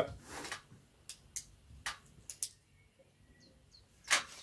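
A quiet pause at a table: a few light clicks and taps from handling glasses and a pen, then two faint short bird chirps near the end.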